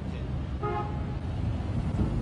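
A short horn toot on a single pitch, a little over half a second in, over steady low background noise.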